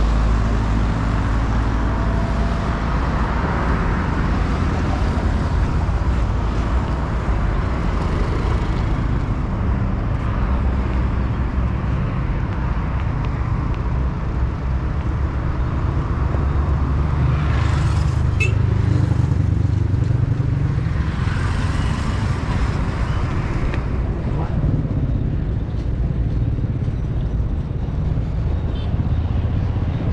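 Roadside traffic noise: a steady low rumble with vehicles passing, the clearest passes about 18 seconds in and again a few seconds later.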